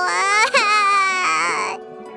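A cartoon shark character crying out loud from a toothache: a short wail, then a longer one that falls in pitch. A steady children's music bed plays underneath.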